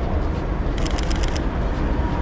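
Mirrorless camera shutter firing a rapid burst of about eight clicks in well under a second, over a steady rumble of street traffic.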